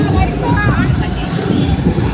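Loud street din: people's voices over the low rumble of vehicles.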